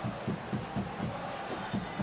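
Stadium crowd noise from a football match broadcast, with a steady low drumbeat about four times a second, typical of supporters' drums in the stands.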